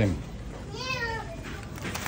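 A single high-pitched, meow-like cry about a second in, rising and then falling in pitch, over low shop background noise.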